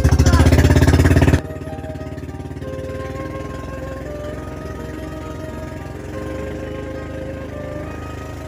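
Outrigger boat's engine running loudly with a fast, even pulse, cut off abruptly about a second and a half in, leaving background music over the engine's lower, steady hum.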